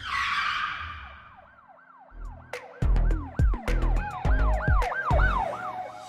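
Channel logo intro sting: a whoosh, then a quickly repeating siren-like wail, about three rises and falls a second, joined about two seconds in by heavy bass hits and sharp clicks, in a hip-hop style.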